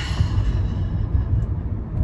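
Steady low road rumble inside a moving car's cabin, from tyre and engine noise while driving.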